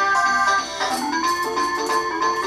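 Small toy electronic keyboard playing a built-in tune in an organ-like tone: a melody of short, steady notes that keeps going while nobody touches the keys.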